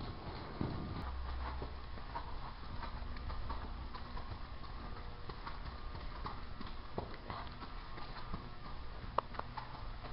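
A ridden horse trotting on the soft dirt footing of an indoor arena, its hoofbeats coming as a run of dull knocks, with one sharper knock near the end.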